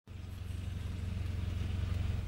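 A car's engine running with a steady low hum and a light hiss, heard from inside the cabin. It grows slowly louder.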